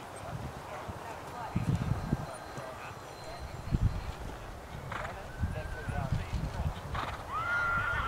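Dull hoofbeats of a horse trotting on turf, with a horse whinnying, a wavering call that starts near the end.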